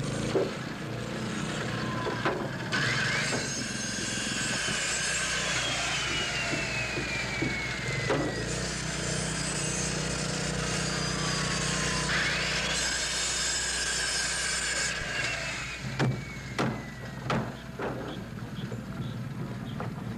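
Carpentry at a rebuilding site: a power saw spins up and cuts lumber twice, its whine rising quickly and then sagging slowly under the load of the cut. Several sharp hammer blows come near the end.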